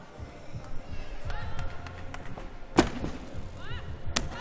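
A gymnast's vault: thudding run-up footsteps on the runway, then a single loud, sharp bang from the springboard takeoff about three-quarters of the way through. Arena voices and background music run underneath.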